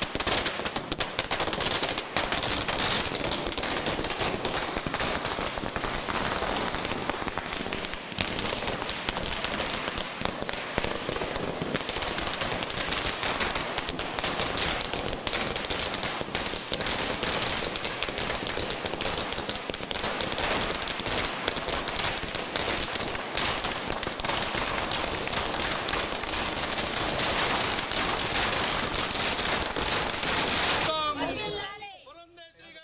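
A long string of firecrackers going off, a rapid, unbroken chain of sharp bangs that keeps an even pace.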